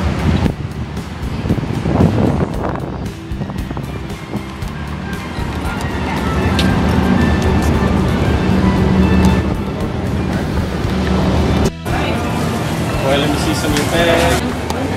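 Music playing with voices, dropping out for a moment a couple of seconds before the end.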